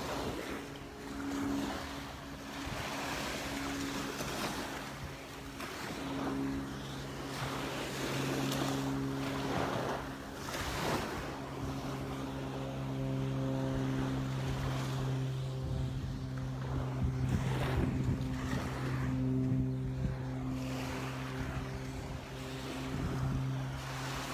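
Small Gulf waves breaking and washing up on a sandy shore, rising and falling in repeated surges. From about six seconds in, a steady low hum with a few held tones runs underneath.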